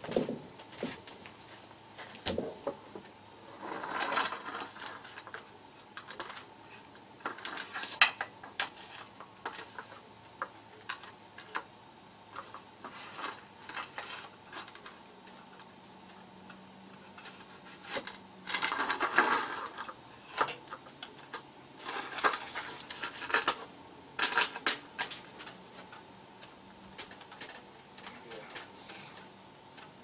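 Metal overflow dish and metal fittings being handled and set in place on a concrete floor: a series of irregular clinks, knocks and scrapes, with a few denser clatters.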